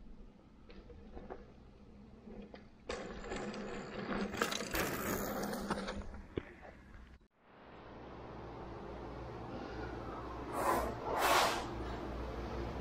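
Outdoors, a rushing noise with scattered clicks grows louder about three seconds in and stops dead just past halfway. It gives way to a steady hiss of air conditioning in a small room, with two loud breaths near the end.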